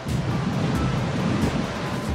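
Sea surf washing over shoreline rocks: a steady rushing noise, with background music faintly under it.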